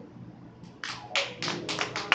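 Handclapping that starts about a second in and goes on in a steady rhythm of a few claps a second.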